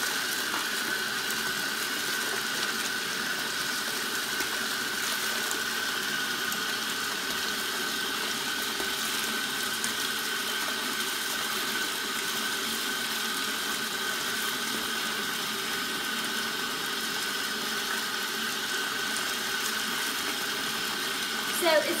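Bathtub faucet running steadily, its stream pouring through a metal mesh strainer into a tub filling with water.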